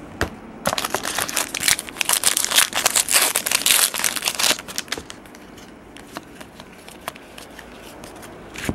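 Plastic wrapper of a Panini Prestige basketball card pack being torn open and crumpled by hand: a dense crackling that starts about a second in and is loudest for a couple of seconds in the middle. It then drops to a few light ticks as the cards are handled.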